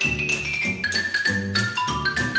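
Xylophone playing a quick, bright melody with hard mallets, accompanied by a snare drum and a plucked upright bass.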